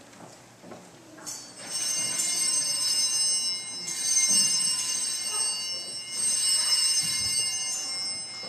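Altar bells, a set of small handbells, shaken three times. Each is a high, shimmering ring of about two seconds, starting about a second in, at four seconds and just after six seconds. This is the ringing that marks the elevation at the consecration of the Mass.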